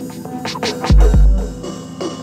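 Abstract electronic techno track: a steady drone of held synth tones with scratchy, falling high swishes, then two deep bass-drum hits in quick succession about a second in, each with a long booming sub-bass tail.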